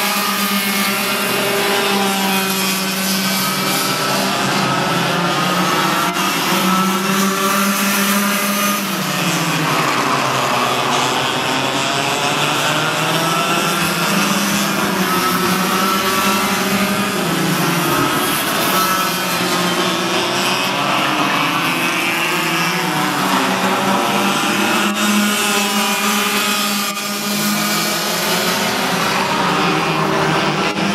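Several Yamaha cadet racing karts' small two-stroke engines running hard in a pack. Their overlapping pitches keep rising and falling as the karts lift and accelerate through the corners.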